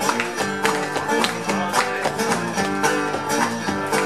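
Two acoustic guitars playing an instrumental blues passage with no singing: steadily picked notes and chords at an even rhythm.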